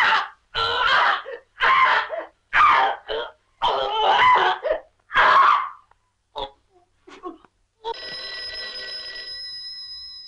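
A woman crying out in five or six short bursts over the first six seconds. Then an old desk telephone bell rings once for about two seconds near the end.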